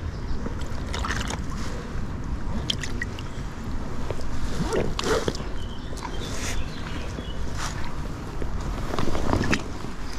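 River water sloshing and splashing around hands holding a large brown trout in the shallows as it is revived for release, with short splashes scattered through and a low wind rumble on the microphone.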